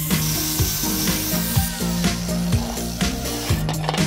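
Angle grinder with a thin abrasive cutting disc cutting through a rusty steel disc-harrow blade, a high grinding hiss, heard under background music with a steady beat.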